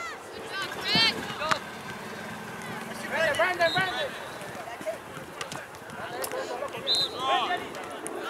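Scattered shouted calls from players and spectators during a youth soccer match, no words clear, in short bursts about a second in, around three to four seconds in and again near seven seconds, over open-air background noise.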